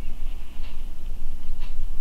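Foam sponge brush dabbing paint onto a small diecast car body: a few faint soft taps, over a steady low hum.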